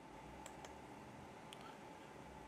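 Near silence: faint room tone with a few soft clicks, two close together about half a second in and one more about a second and a half in.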